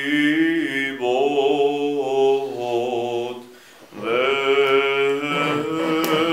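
Male Orthodox liturgical chant, long held and slowly gliding notes in two phrases with a short break a little past halfway, as the Gospel reading comes to its close.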